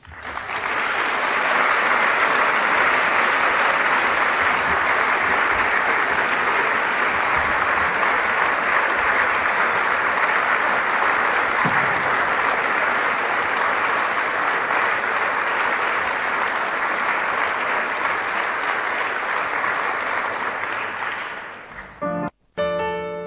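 Audience applauding. The clapping swells within the first second or two, holds steady, and dies away just before the end.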